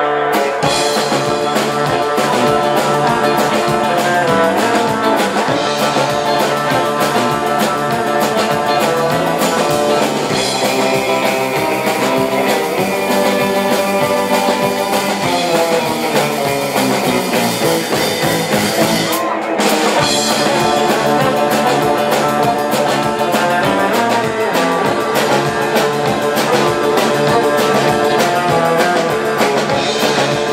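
A live rautalanka band playing an instrumental: twangy electric guitar lead over bass guitar and drum kit. In the middle a long run falls steadily in pitch, followed by a brief break before the band carries on.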